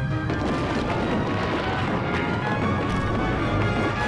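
Cartoon rockfall sound effect: a dense run of crashes and clatters of boulders tumbling down, starting a moment in, over orchestral background music.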